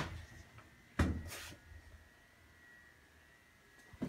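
A single sharp clunk from a 1930s Staley single-speed traction elevator about a second in, with a short noisy tail, followed by a faint steady high whine.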